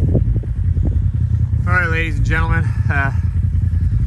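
Side-by-side UTV engine idling with a steady low rumble.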